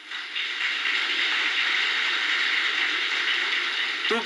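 An audience applauding: many hands clapping together in a steady, even clatter that builds up over the first half second.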